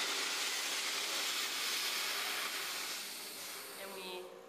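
Steady hiss of compressed air rushing into an inflatable life raft, fading away over the last second.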